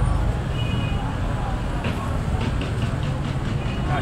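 Busy street ambience of traffic and crowd: a steady low rumble of vehicles with background voices, and a few brief high tones and short clicks mixed in.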